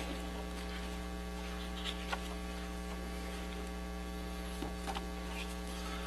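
Steady electrical mains hum, a low buzz that holds unchanged, with a few faint clicks about two seconds in and again near the end.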